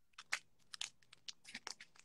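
Faint crinkling and tearing of a Pokémon card booster pack's foil wrapper being opened: a quick, irregular run of short crackles.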